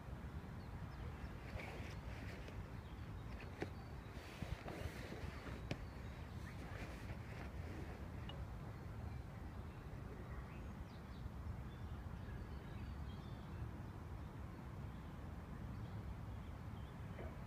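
Nylon hammock fabric rustling, with a few light clicks, as the cover is pulled closed over the person lying in it, over a steady low rumble. A single short bird chirp comes about halfway through.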